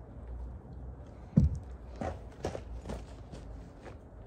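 A few irregular knocks and crunches over a steady low rumble. The loudest is a low thump about a second and a half in, followed by weaker knocks.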